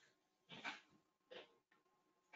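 Near silence: faint room tone with a few soft, short noises about a second apart.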